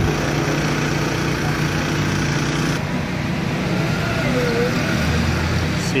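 A steady motor hum, then about three seconds in a switch to street traffic noise with vehicles going by.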